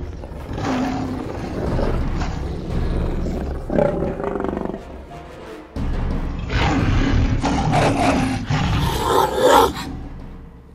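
Big-cat roars and snarls voicing a sabre-toothed cat, in several loud bursts with a lull around the middle and the loudest near the end, over background music.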